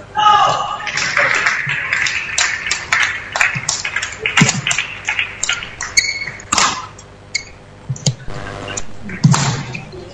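Voices in a large sports hall, with many scattered sharp taps and clicks at irregular intervals.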